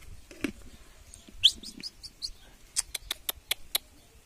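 Common marmosets calling: a few short, high-pitched chirps about a second and a half in, then a quick run of about six sharp, clicky calls near the end.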